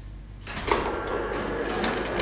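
Rustling and clattering of things being handled at a lectern, starting about half a second in, with a few sharp knocks.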